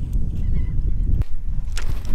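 Red drum (redfish) making its low croaking drum sound while held and unhooked; the sound stops abruptly a little over a second in.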